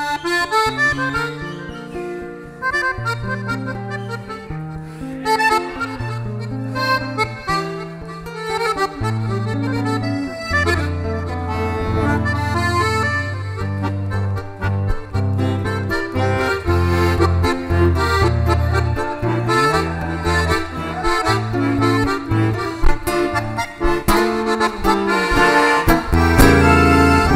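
Button accordion playing an instrumental tune in traditional gaúcho style, accompanied by an acoustic guitar.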